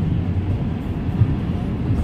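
Steady low rumble of road and engine noise heard inside a car cabin while it drives along a wet highway.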